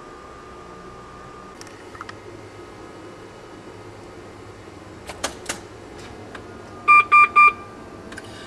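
Three short, high electronic beeps in quick succession near the end, over a low steady hum. Earlier a faint steady tone at the same pitch stops about one and a half seconds in, and a few faint clicks follow.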